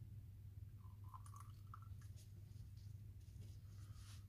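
Near silence over a steady low hum, with a few faint, soft squishy sounds of thick soap batter being poured into a bowl and moved with a silicone spatula.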